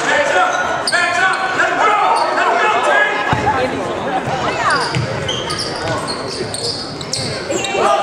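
Spectators and players calling out in an echoing gymnasium, with a basketball bouncing on the hardwood court and short high squeaks of sneakers on the floor.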